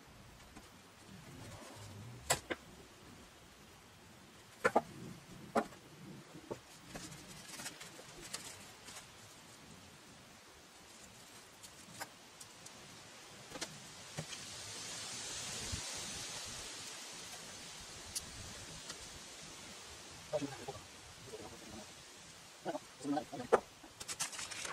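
Hammock being hung in a wooden shelter: scattered knocks and taps on the plank floor and frame, and a swell of fabric rustling in the middle as the hammock and its stuff sack are handled. A few short pitched sounds near the end, then footsteps on the boards.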